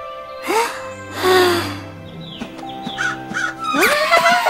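Cartoon crow cawing, a harsh call about a second in followed by shorter calls, over background music.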